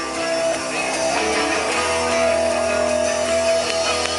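Live rock band playing through a PA: strummed electric guitars in an instrumental stretch before the vocals come back in, with one note held for about a second and a half past the middle.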